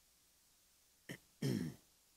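A man clearing his throat once: a faint catch about a second in, then a brief rasp that falls in pitch, over quiet room tone.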